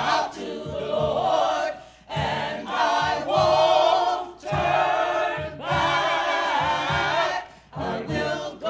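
Mixed church choir of men and women singing a gospel song, line by line with short breaths between phrases.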